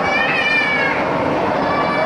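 A short high-pitched squeal from a person, about a second long, over the steady din of a crowded public ice rink.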